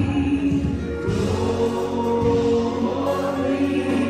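A congregation singing a gospel worship song together, led by a worship leader on a microphone, in long held notes.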